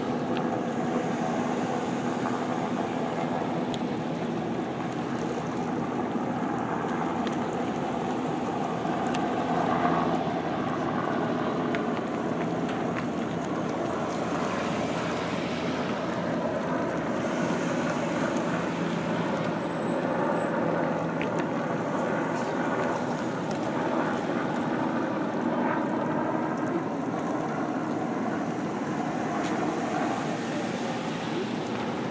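A slow procession of police cruisers and SUVs passing close by one after another, a steady mix of engine and tyre noise.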